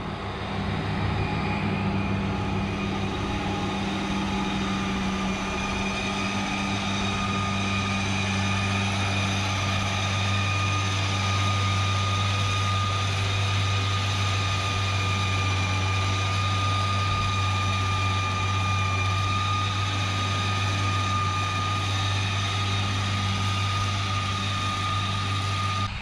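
John Deere tractor running steadily under load, driving a rear-mounted 617 disc mower through a heavy stand of sorghum, with a steady high whine over the engine. The low engine sound grows fuller about six seconds in.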